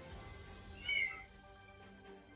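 A single short, high-pitched call that rises and falls in pitch about a second in, meow-like, over a faint steady background tone.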